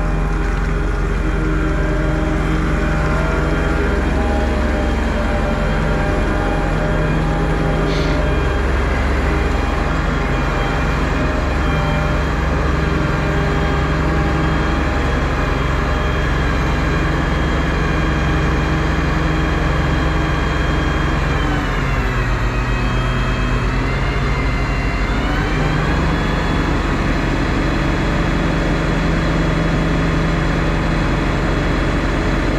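Heavy diesel engines of a sand-bedder truck and a wheel loader running steadily. About two-thirds of the way through, the engine note sags, then picks back up within a few seconds.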